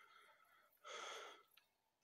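Near silence, broken about a second in by one short breathy exhale, a sigh from the person holding the microphone.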